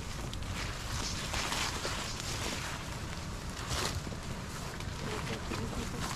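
Footsteps and rustling vegetation as a walker pushes along a narrow, overgrown, wet trail, with leaves and branches brushing past, over a steady low rumble of wind on the microphone.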